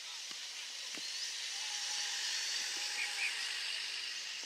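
Steady outdoor hiss that swells a little in the middle, with faint distant calls.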